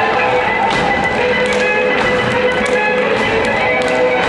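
Folk dance music playing, with sharp stamps and taps of the dancers' feet on the stage floor coming in quick succession from about a second in.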